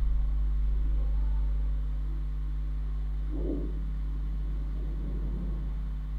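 A steady low hum, with a faint brief sound about three and a half seconds in.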